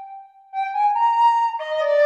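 Sampled soprano recorder from the CineWinds Pro library in Kontakt playing a slow melody dry, without its effects: a held note trails off, then a short phrase climbs two steps and drops to a lower held note near the end.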